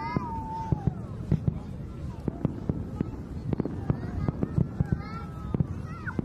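Aerial fireworks going off: a steady run of sharp bangs and crackles, several each second.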